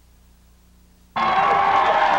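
Faint tape hiss, then a little over a second in, loud stadium crowd noise cuts in abruptly: cheering with shouts and whoops.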